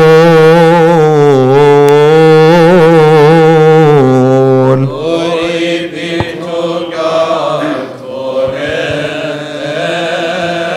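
Coptic liturgical chant: a single male voice sings a long, ornamented line that wavers around one pitch for about five seconds. Then several voices take up the chant together, noticeably quieter and less clear.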